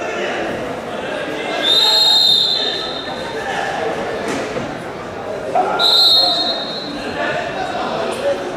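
A referee's whistle blown twice, each blast a steady high note lasting about a second, over the murmur of voices in a large sports hall.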